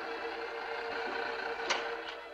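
Multiplane animation camera running as it exposes a frame: a steady mechanical whir that ends in a sharp click near the end, over a held note of background strings.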